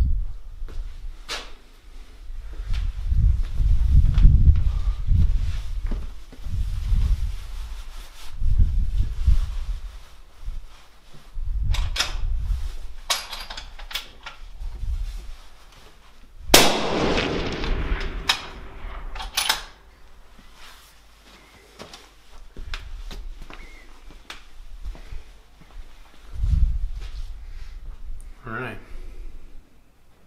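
One shot from a suppressed .284 Winchester rifle a little past halfway: a sharp report that rings on for about three seconds. Before it, scattered clicks and low rumbles.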